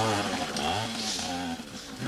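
Small trials motorcycle engine revving up and down as the rider works through an obstacle section.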